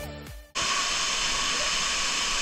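Electronic background music fades out in the first half second. Then a sudden cut brings in the steady rush of Dhangar Waterfall pouring into its pool.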